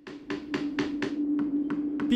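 Small hammer tapping gold-coloured metal fittings onto a polished wooden casket, light, quick taps at about four a second, over a steady low tone.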